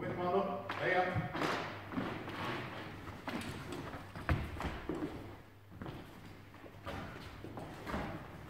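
Footsteps and stamps of fencers moving on a wooden hall floor during a longsword sparring bout, with scattered thumps and one sharp knock about four seconds in. A voice is heard briefly at the start.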